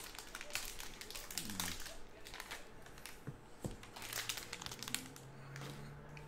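A foil trading-card pack being torn open and crinkled by hand. The crackling is densest in the first couple of seconds, then thins to softer, scattered handling noises.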